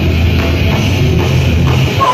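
A crossover thrash band playing live and loud: distorted electric guitars, bass and a fast drum kit in a dense, unbroken wall of sound.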